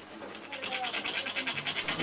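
Quick, irregular scratchy rustling close to the microphone that grows slowly louder after a quiet first half second, with faint voices behind it.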